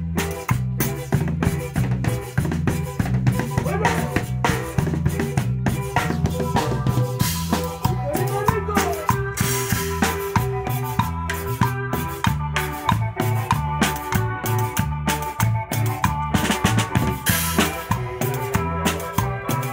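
A live band rehearsing a cumbia: drum kit keeping a steady beat with snare and bass drum, under a repeating bass line and electric guitar parts.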